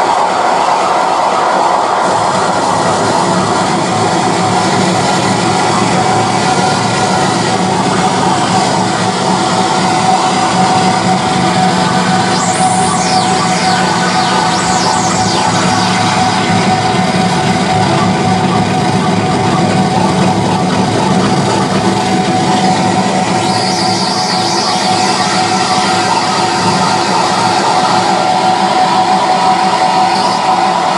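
Harsh noise music played live: a loud, unbroken wall of distorted noise with a steady high drone running through it, and a few falling squeals about halfway through.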